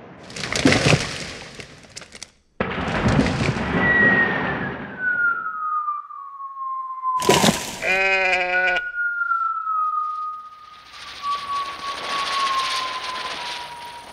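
Sound effects for a big stone falling down a mountainside. Noisy crunching, crashing bursts come first, then a long falling whistle-like tone. About seven seconds in there is a sharp crack and a short wavering call, followed by another slow falling tone over a steady rushing hiss.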